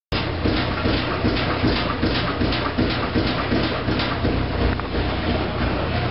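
Washing machine running and making a strange noise: a repeating knocking, about four a second, with short squeaks over a steady low hum.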